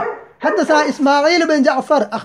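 Arabic recitation in a sing-song chant, the voice gliding up and down on drawn-out syllables, with a brief break about half a second in.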